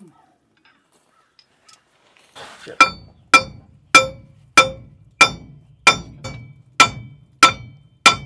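Hammer blows on a steel part under the truck, a little under two strikes a second beginning about three seconds in, each blow ringing metallically.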